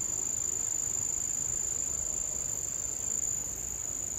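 Insects singing in a steady high-pitched chorus, one unbroken tone, over faint outdoor background noise.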